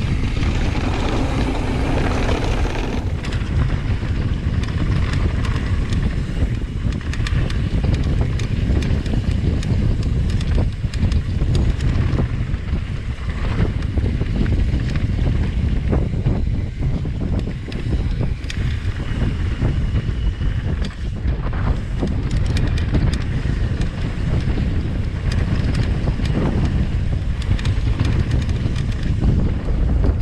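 Mountain bike descending a dirt downhill trail: wind buffeting the camera's microphone over a steady rumble of knobby tyres on dirt, with frequent clatter and knocks from the bike's chain and parts over bumps.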